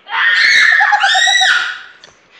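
A girl screaming in play, high-pitched: a wavering cry that turns into a held high shriek and ends about a second and a half in.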